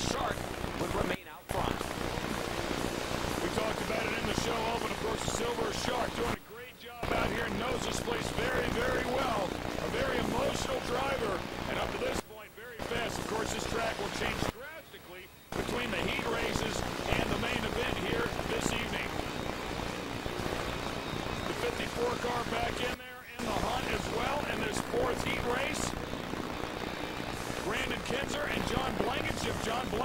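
Dirt late model race cars' V8 engines running hard in a pack at speed, a dense, crackling engine noise heard in short clips broken by several brief drops.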